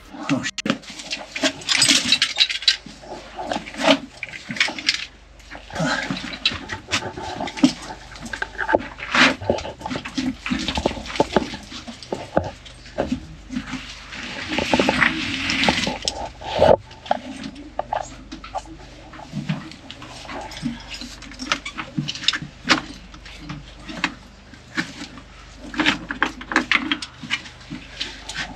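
Loose rock and gravel crunching, clattering and scraping under boots and hands as men climb down a narrow mine shaft, with irregular knocks throughout. Short breaths and grunts from the climbers come and go.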